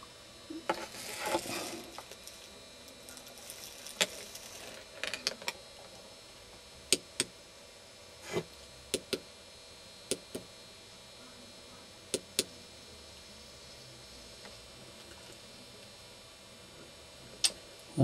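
Scattered light clicks and taps, about a dozen spread irregularly, with a brief rustle near the start, over a faint steady electrical hum from powered radio and video electronics.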